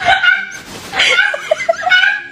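A small pet's high-pitched whining cries that rise and fall, ending in a quick run of short yips.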